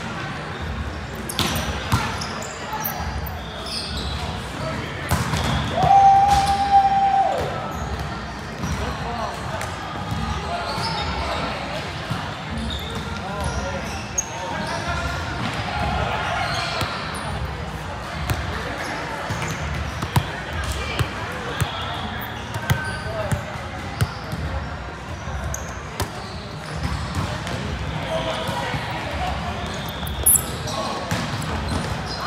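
Volleyball rally: a volleyball struck by hands and arms in sharp, scattered smacks, with players' voices calling in between, in a large echoing gym. A single held tone is heard about six seconds in.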